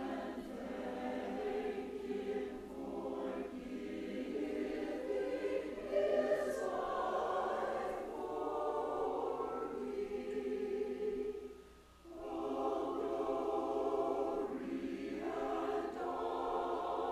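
Church choir of mixed men's and women's voices singing, with a short break between phrases about twelve seconds in.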